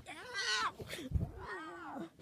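Two drawn-out, meow-like whining cries, each rising and then falling in pitch, with a dull low thump between them about a second in.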